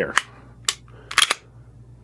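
Sharp mechanical clicks of a pistol being cocked and dry-fired on a laser training cartridge: four clicks, the last two close together a little past halfway.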